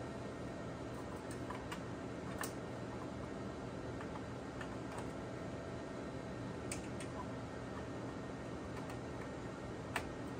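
Faint clicks and taps of small USB dongles being handled and pushed into the USB ports on a slot machine's CPU board, a few in the first seconds and two more past the middle, over a steady low room hum.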